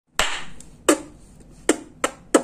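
Three sharp, clap-like percussive hits at an even pace, about three quarters of a second apart, each fading quickly.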